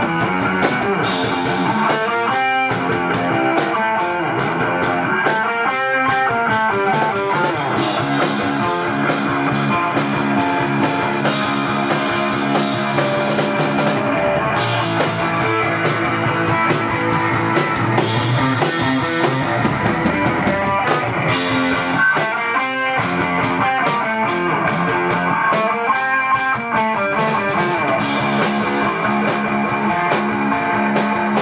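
A live stoner-rock band playing: an electric guitar, a Danelectro, with a drum kit beating out a steady rhythm of drum and cymbal hits.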